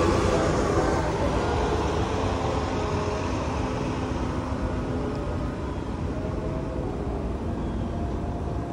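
Road traffic rumble with a motor vehicle's engine hum whose pitch drifts slowly down as it gradually fades.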